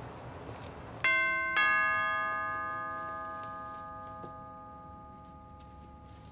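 Two-note ding-dong doorbell chime: a higher note about a second in, then a lower one half a second later, both ringing on and fading slowly.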